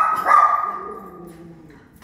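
A small dog barking with high yaps, one more about a quarter second in, then trailing off and fading within the first second and a half.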